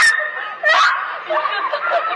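Startled young women laughing, with short high squeals in quick bursts.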